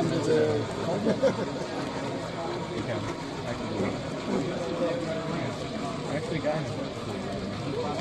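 Indistinct conversation from people nearby; the talk continues throughout with no other sound standing out.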